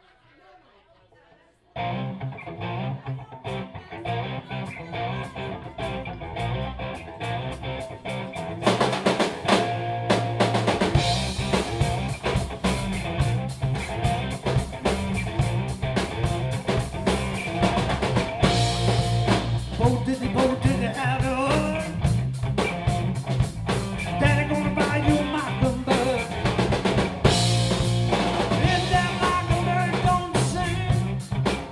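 Live rock trio of electric guitar, bass guitar and drum kit starting a song: the band comes in about two seconds in, gets much louder about nine seconds in, and vocals join in the later part.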